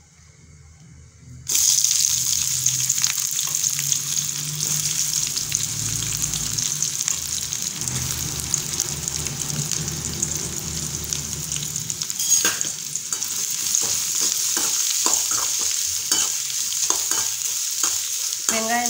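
Sliced onions hitting hot oil in a metal kadai start sizzling suddenly about a second and a half in, then fry with a loud, steady hiss. From about twelve seconds in, a metal spatula scrapes and clicks against the pan as the onions are stirred.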